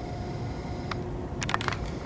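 A few short clicks, one about a second in and a quick cluster about half a second later, over a steady low background rumble.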